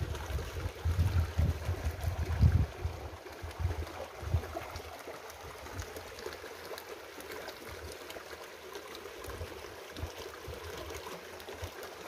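Steady trickling of water, with a few dull low thumps in the first two or three seconds.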